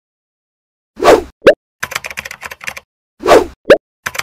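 Title-animation sound effects: a swoosh followed by a short rising pop, a run of rapid typing-like clicks, then another swoosh and pop.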